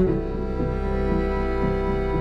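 Background music of slow, sustained low notes over a steady drone, moving to a new chord at the start.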